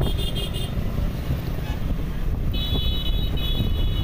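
Motorcycle riding through traffic: a steady low rumble of engine and road with wind on the microphone. A high steady tone sounds briefly at the start and again through the last second and a half.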